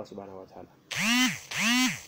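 An animal calling twice, each call about half a second long, rising and then falling in pitch, and louder than the nearby man's voice.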